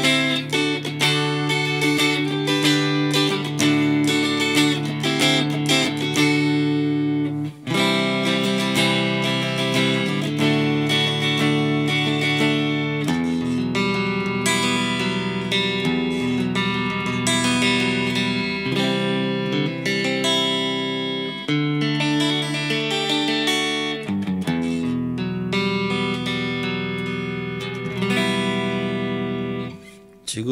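Cort G250 SE electric guitar played with a clean tone on its front (neck) single-coil pickup, ringing chords and notes with a short break about seven and a half seconds in, dying away just before the end.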